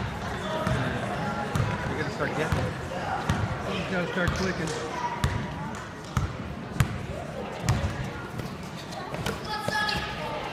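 Basketball being dribbled on a hardwood gym floor, sharp thuds roughly a second apart in the second half, over a murmur of voices from players and spectators in an echoing gym.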